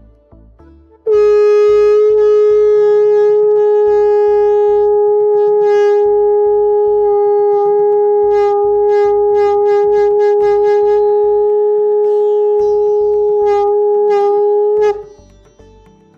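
A Padma conch shell (shankh) blown in one long, steady note with a thin tone, starting about a second in and held for about fourteen seconds before cutting off.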